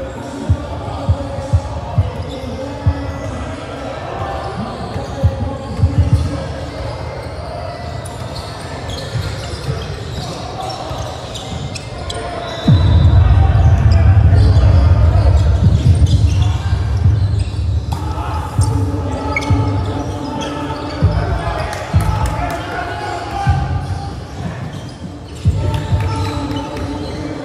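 Basketball dribbled on a gym court, its bounces thudding about twice a second at first, with players' voices echoing in the hall. A loud low rumble covers several seconds in the middle.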